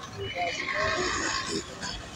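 Indistinct voices in the background, with a wash of street noise behind them.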